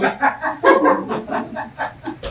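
Audience laughter, a quick run of short ha-ha bursts that dies down over about two seconds.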